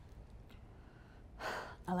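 A quiet pause, then one short, audible in-breath about one and a half seconds in, drawn just before the speaker resumes talking.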